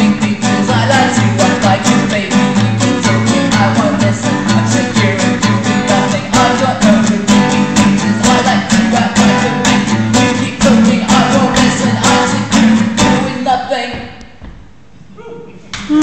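Acoustic guitar strummed in a steady, choppy reggae rhythm, with singing over it. The playing stops about two seconds before the end, the last chord dying away.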